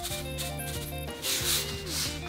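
Salt shaken from a shaker into a ceramic bowl: a few short gritty rattles of grains, the loudest about a second and a half in, over background music.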